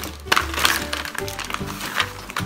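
Background music with a steady bass line and held notes. Over it come a few light clicks and rustles as magnetic puzzle pieces are handled in a plastic bag.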